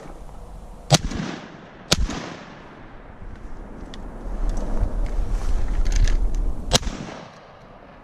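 Three shotgun shots at ducks: two about a second apart, then a third near the end, each with a short ringing tail. A low rumble fills the gap before the third shot.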